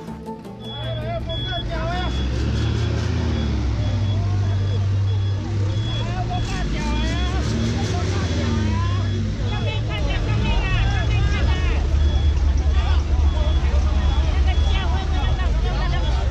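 A crowd of people talking over the low running of a truck engine. A short high beep repeats about twice a second throughout.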